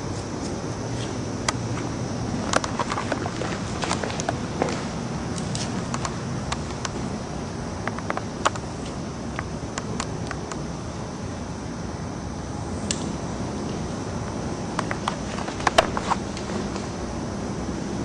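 Hair-cutting scissors snipping through thick hair in scattered sharp clicks, with a tight cluster of snips near the end, over a steady background hum.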